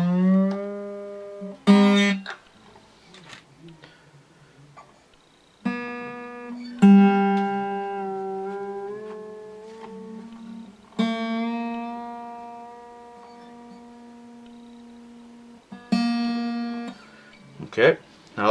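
Newly fitted B string on an acoustic guitar plucked about six times, each note ringing out for several seconds and fading. The pitch rises slightly near the start as the string is wound up toward tune, and there are a few short clicks from handling the tuners.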